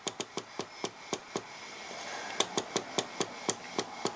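Rotary channel selector knob on a Cobra 148 GTL CB radio clicking through its detents, about fourteen clicks. The clicks come in a quick run, pause for about a second, then come in another run, each click one channel step.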